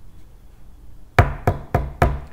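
Knocking on a wooden door: a run of quick knocks, about a quarter second apart, beginning a little over a second in. Someone is arriving at the door.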